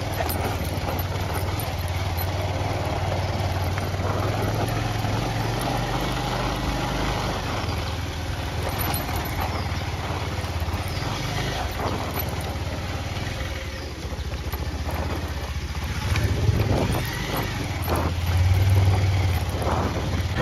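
Motorbike engine running steadily while riding over a rough dirt road, with road and wind noise. The low engine hum swells a little louder in the last few seconds.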